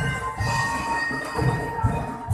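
Street parade music: drum beats about once a second under long held high notes.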